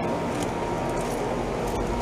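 2009 Carrier Comfort four-ton heat pump running in cool mode: the steady hum of its Copeland scroll compressor under the rush of the condenser fan, with a faint steady whine.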